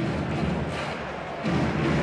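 A short music sting for a segment title card, with a noisy swish and a low thud at the start and another low swell about one and a half seconds in.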